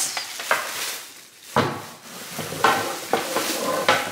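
Paper wrapping crinkling and rustling as a heavy wooden cutting board is handled and unwrapped, with a sharp knock about one and a half seconds in.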